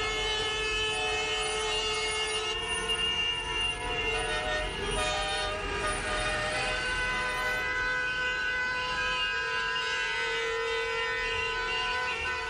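Many car horns sounding at once in long, held blasts of different pitches, a continuous chorus of honking from a flag-waving motorcade of cars.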